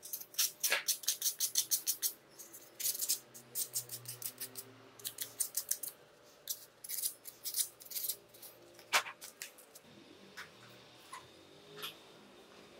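Sandpaper rubbing the fluorescent lamp's metal pins clean in quick scratchy strokes, several a second, first in a steady run and then in short spurts, to clear oxidation before soldering. A sharper click comes near the end.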